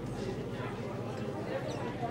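Crowd chatter in a hall: many voices talking at once at a steady level, with no single clear speaker.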